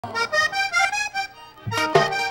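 Diatonic button accordion playing a quick solo vallenato melody, separate notes about four to five a second, dipping briefly past the middle before a lower note and a sharp click near the end.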